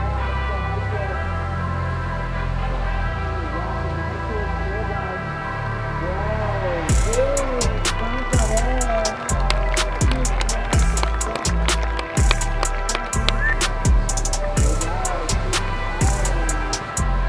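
Background music: held tones at first, then a drum beat comes in about seven seconds in.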